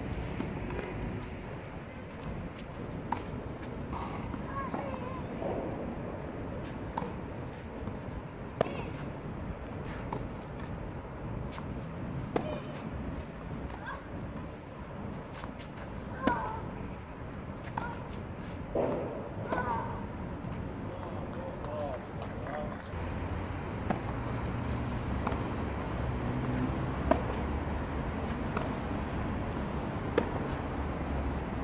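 Tennis ball struck by rackets in a clay-court rally: single sharp pops a second to several seconds apart, against distant voices.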